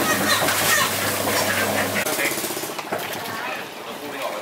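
Rubber-finger chicken plucker drum running with a steady motor hum and rattle while water is splashed into it. The motor hum cuts off about halfway through.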